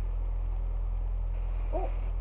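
A steady low hum runs under everything, with a woman's brief "oh" near the end.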